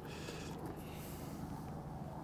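Faint steady outdoor background noise with no distinct sound event.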